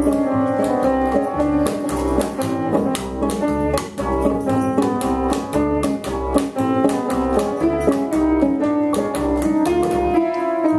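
Instrumental improvisation by keyboard, banjo and bass: quick plucked banjo notes over a bass line of about two low notes a second.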